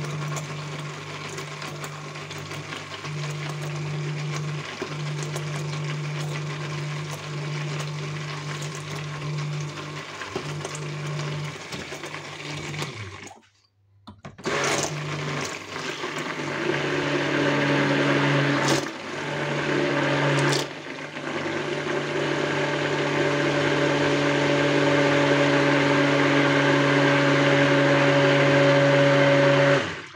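Handheld stick blender running in a bucket of soap batter, its motor humming steadily while the soap is blended toward trace. It stops for about a second near the middle, restarts with two brief pauses, and runs louder with a higher hum through the second half.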